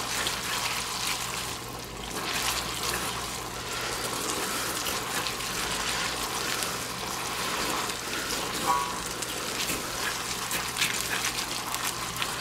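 Ramen noodles sizzling in a hot wok as they are stir-fried with chopsticks: a steady frying hiss with a few light clicks of the chopsticks against the pan.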